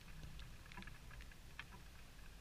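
Faint open-air ambience of a distant football match: a steady low rumble with a few faint, short knocks and ticks from play far up the pitch.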